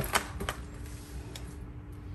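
A few light clicks and knocks as a hard serving tray with a purse on it is handled and lifted, the sharpest right at the start and another about half a second in, over a faint steady hum.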